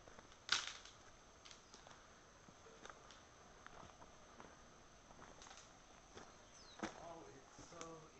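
Quiet, scattered crunches and snaps of footsteps on leaf litter and twigs, with one sharper crackle about half a second in. A person's voice is heard briefly near the end.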